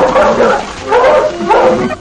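Dogs barking, several barks about two a second: a sound effect for watchdogs.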